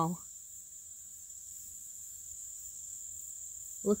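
Steady, high-pitched chorus of insects such as crickets, continuous and unbroken.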